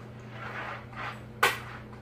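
A single sharp click or knock about a second and a half in, over a steady low hum.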